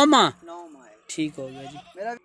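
A goat bleats once, loudly, right at the start: a short call of about half a second that rises and then falls in pitch. Quieter voiced sounds follow later.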